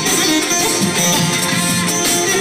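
Balkan kuchek dance music played live on electronic keyboard and electric guitar, with fast, continuous melodic lines.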